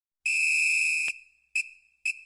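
A whistle: one long, steady, high-pitched blast of nearly a second, then a short toot about half a second later.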